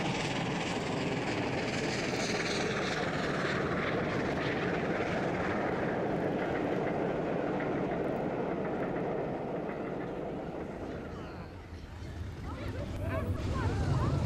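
LNER A4 Pacific steam locomotive Mallard running past at speed with a train of coaches: a steady noise of exhaust and running gear. It fades away about three-quarters of the way through, then builds again in the last couple of seconds as the engine approaches.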